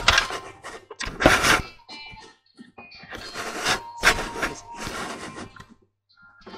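Handling noise from a camera being set in place: irregular rubbing and knocking on the microphone, in bursts of about half a second with short gaps.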